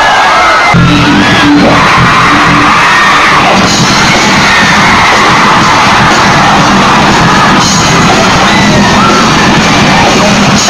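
Loud heavy rock music with yelling voices over it.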